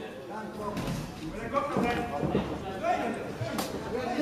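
Several voices shouting indistinctly from around a boxing ring, with a single sharp smack about three and a half seconds in.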